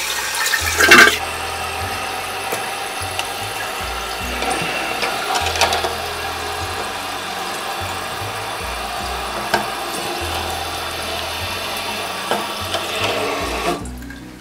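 Toilet tank refilling through a Fluidmaster fill valve: a louder rush of water about a second in, then a steady hiss of running water with scattered plastic clicks as the float's adjustment clip is squeezed and moved. The hiss cuts off near the end as the valve shuts.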